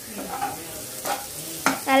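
Shredded cabbage sizzling in hot oil in a pan while a metal spatula stirs and scrapes through it, with a couple of sharp scrapes around the middle.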